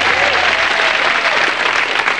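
Studio audience applauding, a dense steady clatter of clapping.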